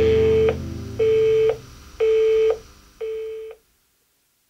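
Electronic beep tone like a telephone busy signal, sounding four times at half a second on and half a second off, over the fading low end of a heavy-metal track. The last beep is quieter, and the sound stops just before the end.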